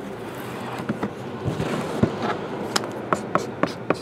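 Handling noise: shrink-wrapped cardboard card boxes rustling and sliding as one is pulled from a stack, with scattered light taps and clicks. A felt-tip marker scratches on paper, its ink nearly dry.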